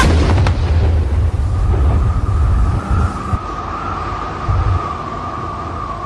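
A sudden loud boom, then a low rumble that wavers and dies away over about three seconds, with a steady high tone held underneath.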